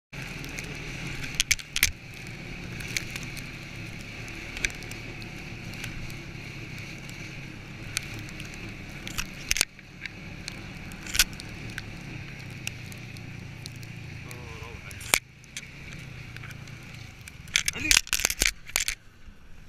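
Snowmobile running along a snowy trail: a steady engine and track drone with scattered sharp clicks and knocks from bumps and snow hitting the camera, one loud knock near the end.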